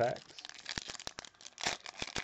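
A foil-wrapped Panini Chronicles baseball card pack being torn open and crinkled by hand: continuous crackling of the wrapper with a louder rip about one and a half seconds in.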